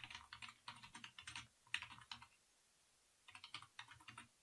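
Faint computer keyboard typing: a quick run of key presses for about two seconds, a pause, then a shorter run near the end.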